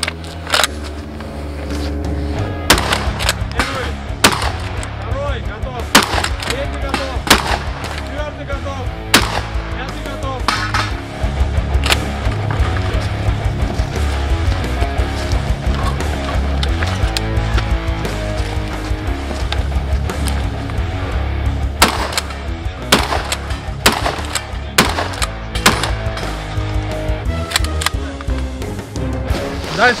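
Pump-action 12-gauge shotgun fired repeatedly, about a dozen shots at uneven intervals with a long gap in the middle, over background music with a steady bass beat.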